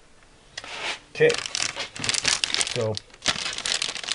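Clear plastic parts bag crinkling as it is handled and lifted, in ragged bursts from about half a second in.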